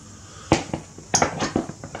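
A string of sharp clicks and knocks, beginning about half a second in, as a motorcycle solo seat is handled and set in place on a Sportster's frame.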